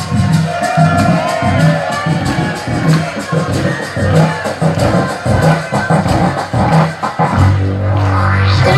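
Live rock band playing: drums and bass keep a steady beat about twice a second under guitar and other pitched parts, and near the end the bass moves to a long held low note.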